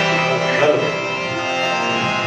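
Indian devotional music with sustained harmonium-like tones and hand-drum beats, playing steadily.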